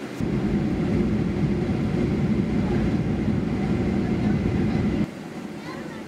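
Jet airliner on its landing rollout, heard inside the cabin: a loud low rumble that starts abruptly and cuts off suddenly about five seconds in.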